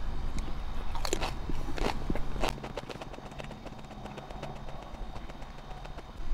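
A person biting into and chewing a slice of raw Variegated Sugar Rush Peach x poblano pepper: three crisp crunches in the first two and a half seconds, then quieter chewing.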